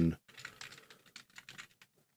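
Typing on a computer keyboard: a quick run of faint key clicks, with the tail of a spoken word at the very start.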